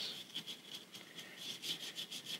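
Faint, light scratchy strokes of a small brush worked against a carved wooden figure, several strokes a second at an uneven pace.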